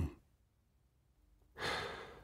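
Near silence in a spoken-word recording, then about one and a half seconds in a man's soft, audible intake of breath.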